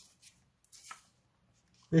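Paper handling: a printed question slip is laid and slid onto a sheet of paper, giving a few short, soft rustles in the first second.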